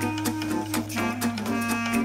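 Instrumental background music with a steady beat over a held low bass note.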